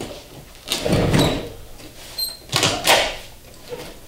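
Old upholstery fabric being pulled and torn away from a wooden chair frame with a staple puller, in two main noisy pulls about a second in and again near three seconds in, with a brief high squeak between them.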